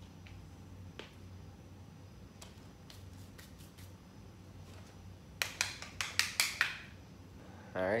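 A quick run of about seven sharp clicks or slaps over a little more than a second, over a low steady hum, with a few fainter ticks earlier.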